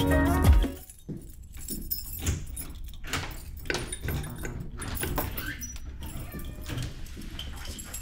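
Background music that stops under a second in, then irregular jangling and clicking of keys as a front door is unlocked and opened.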